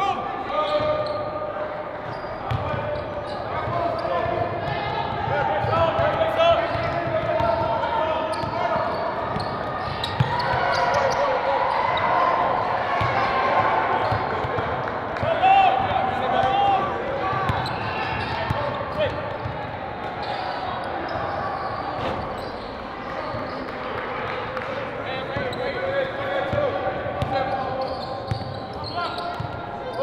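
Basketball practice in a gym hall: a basketball dribbling and bouncing on the hardwood court, under continuous overlapping voices of players and coaches calling out.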